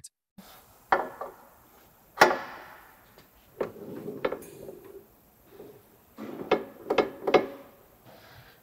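Metal clicks, knocks and scrapes of a MacDon draper header's reel cam being worked with a multi-tool as the lock pin is pulled and the cam is turned to position four. A sharp clank with a ringing tail about two seconds in is the loudest sound, and a quicker run of clicks comes near the end.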